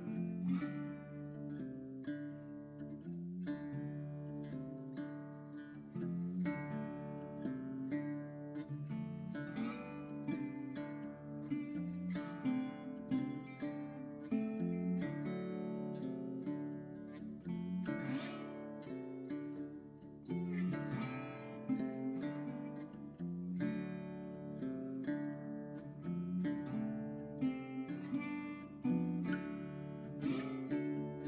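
Background music: acoustic guitar playing with plucked and strummed notes.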